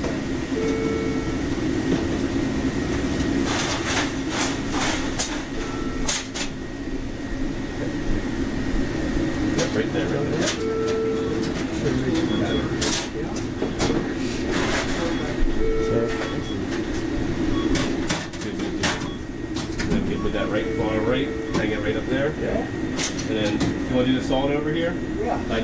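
Fast-food kitchen sound at a fry station: a steady hum, an electronic timer beep repeating about every five seconds, scattered clicks and clatter, and indistinct voices.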